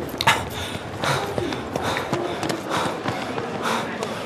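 A man panting hard after running, a heavy breath roughly every half second to second, with a sharp knock near the start.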